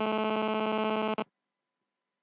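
A steady buzzing electronic tone at a fixed pitch that cuts off suddenly just over a second in.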